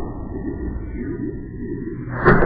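Slowed-down commercial soundtrack: a low, drawn-out drone.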